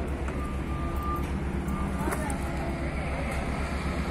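Heavy diesel machinery engine running steadily, a low rumble with a rapid even pulse. Brief thin high tones and a short knock sound over it.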